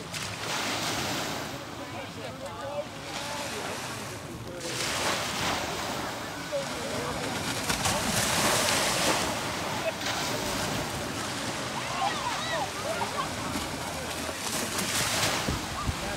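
Small, calm sea waves washing onto a sandy shore, the hiss of the surf swelling and fading every few seconds, with faint distant voices.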